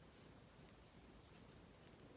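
Near silence with a few faint, brief scratchy rustles in the second half, as a beading needle and nylon thread are drawn through the peyote beadwork.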